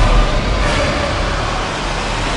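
Film-trailer action sound effects: a heavy crash and rumbling with dense noise, loudest just after the start.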